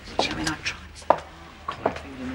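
A young man's voice in a tiled changing room, broken by several sharp taps.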